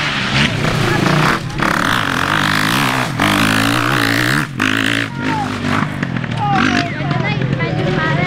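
Motocross dirt bikes riding a dirt track, their engines revving up and down as they accelerate and shift. A voice can be heard over the engines.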